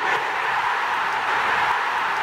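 A steady, loud rushing noise that starts suddenly, with no pitch or rhythm in it.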